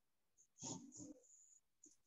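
Near silence: room tone, with a faint brief sound about half a second to a second in.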